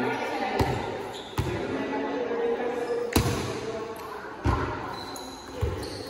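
Volleyball being hit during a rally: about five sharp thumps of the ball striking hands and arms, the loudest about three seconds in.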